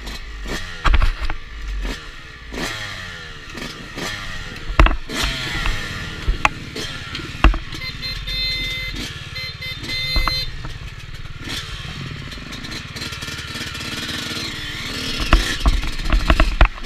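Dirt bike engine revving up and down over and over as it works along a rough, muddy trail, with frequent sharp knocks and rattles from the bike bouncing through ruts. For a couple of seconds in the middle the revs hold steadier.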